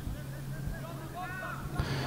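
Faint, distant voices of footballers calling out on the pitch during a stoppage, over a low steady hum.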